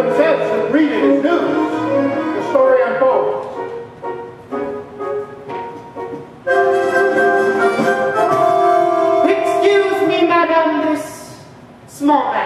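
Stage-musical number: cast voices singing with accompaniment, a long held chord coming in about halfway through and fading away near the end.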